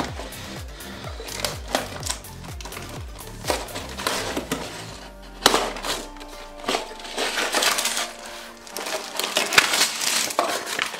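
Cardboard LEGO box being opened and tipped, with plastic bags of LEGO pieces sliding out and rattling: many sharp clicks and crinkles, a loud knock about halfway through and another near the end. Background music plays under it for the first half.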